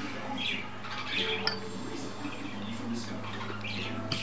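A pet parrot squawking and chattering in short, scattered calls, over a steady low hum.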